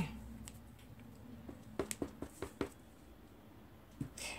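A handful of light, short taps and clicks as a clear-block-mounted rubber butterfly stamp is inked on an ink pad and pressed onto cardstock, most of them around the middle.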